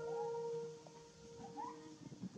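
A long-tailed macaque giving two short rising coo calls, one near the start and one about one and a half seconds in. The last held tone of fading background music lingers beneath them.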